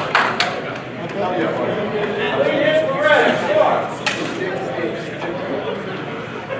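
Several people talking indistinctly in a large, echoing hall, with a few sharp knocks near the start and one about four seconds in.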